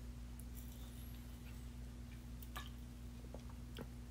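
Faint sipping and swallowing from an aluminium energy-drink can, with a few soft clicks, over a steady low hum.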